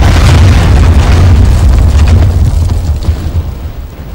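Artillery blast sound effect for a coastal cannon firing: a loud, deep rumbling boom that carries on and fades away over the last second or so.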